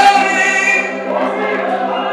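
Gospel singing: a man's voice over a microphone, with other voices joining, over a held organ chord that pulses.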